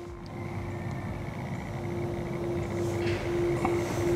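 A steady engine-like drone, one held tone over a low rumble, slowly growing louder.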